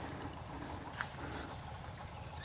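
Quiet outdoor background noise: a faint low rumble with a thin, steady high whine, and one small click about a second in.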